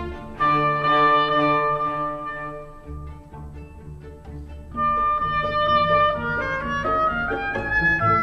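Chamber orchestra playing a concertino for oboe: strings with an oboe. A full chord comes in about half a second in, the music thins to a quieter passage, and a new entry near the five-second mark leads into a rising run of notes toward the end.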